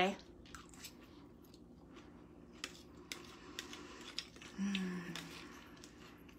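A person chewing a mouthful of salad, with faint scattered clicks, and a short hummed "mm" a little past halfway.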